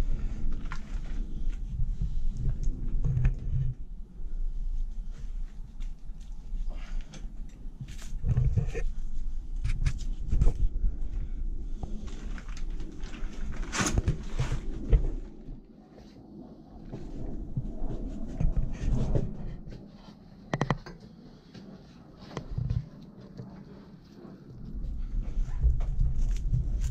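Fillet knife working meat off a hanging deer carcass: irregular scraping and rustling with scattered sharp clicks, quieter in the second half.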